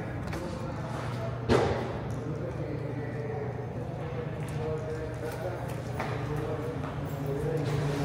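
Indistinct background voices over a steady low hum, with a sharp knock about a second and a half in and a fainter one about six seconds in.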